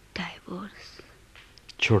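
Speech only: quiet talking, then a louder spoken word near the end.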